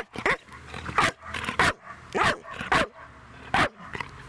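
A dog barking: about seven short barks in an uneven series.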